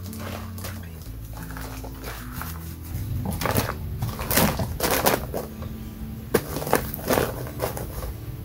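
Soft background music with held notes, and from about three seconds in a series of loud rustles and crinkles as plastic bags of rice and sugar are handled and set down.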